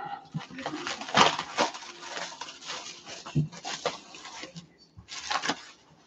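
Plastic stretch wrap being pulled and crinkled off a plastic reptile rack: a run of rustling and crackling with small clicks, then a louder burst of crackling about five seconds in.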